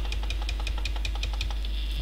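Rapid, evenly spaced light clicks, about seven a second, from working the computer's keyboard or mouse, over a steady low mains hum.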